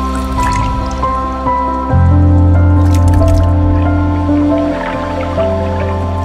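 Intro music of held notes over a deep bass, with water-drip and splash sound effects, most of them coming about three seconds in.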